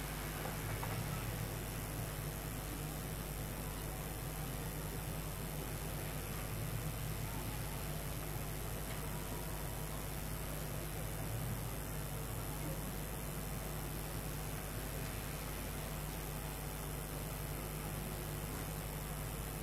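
Steady city street noise with cars passing on the road, over a constant low hum.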